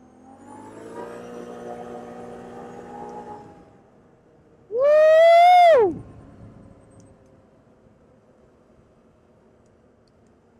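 Can-Am Outlander 850 ATV's V-twin engine pulling under throttle, its pitch rising and then holding steady for about three seconds before the rider backs off. About five seconds in comes a loud whooping yell that rises, holds and then drops sharply in pitch.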